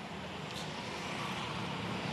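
Steady street traffic noise, a low hum that grows slightly louder over the two seconds.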